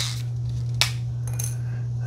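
A small plastic comb attachment clicking off the head of a Philips Norelco nose trimmer: one sharp click a little under a second in, with a few faint handling sounds after, over a steady low hum.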